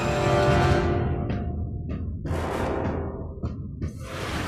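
Orchestral action film score played on its own, without dialogue or sound effects: a loud, dense sustained chord that thins out after about a second, leaving a low rumble and a few separate hits as the music dies away near the end.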